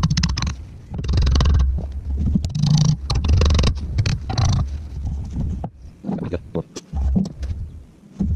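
Hand tools worked against the welds of a steel bracket: a series of rough scraping strokes, each about half a second long, then several short metallic taps and clicks in the second half.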